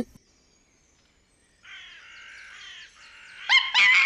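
Harsh wild animal calls: a softer chattering starts about a second and a half in, then louder, rasping cries come near the end.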